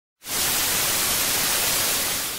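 Analogue TV static sound effect: a loud, steady hiss of white noise that starts a moment in.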